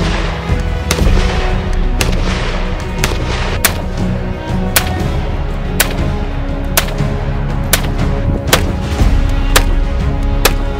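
Vz.52 semi-automatic rifle in 7.62×45 firing single shots, about ten of them, roughly one a second, over background music.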